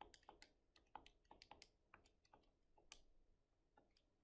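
Faint clicks of calculator keys being pressed one after another, about four or five a second and unevenly spaced, as a long expression is keyed in.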